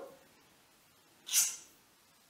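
A single short, sharp sniff through the nose about a second and a half in.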